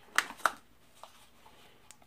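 Two sharp plastic clicks about a quarter second apart, then a faint third: a toy quadcopter being handled, its canopy-top power button pressed in to switch it on.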